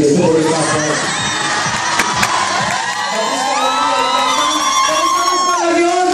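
Audience cheering and shouting, many high voices calling out at once.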